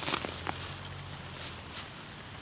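Faint rustling and small crackles of leaves and stems as a hand parts low garden plants, with a faint low hum underneath.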